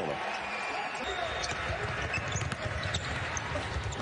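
Live college basketball court sound: a basketball bouncing on the hardwood floor and short court knocks and ticks over a steady arena hum.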